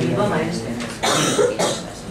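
Indistinct speech, then a cough about a second in.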